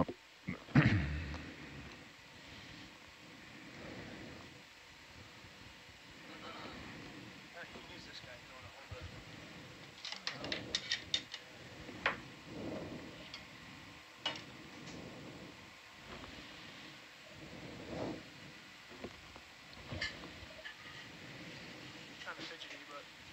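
Quiet control-room background with faint voices and scattered sharp clicks, a cluster of rapid clicks about halfway through; a brief louder sound about a second in.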